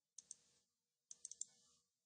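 Faint computer mouse button clicks: a quick double-click, then four quick clicks about a second in.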